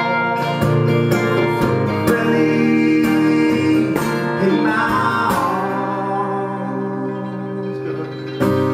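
A man singing live over a strummed acoustic guitar, in a folk-country style. About five seconds in, his voice slides up and back down.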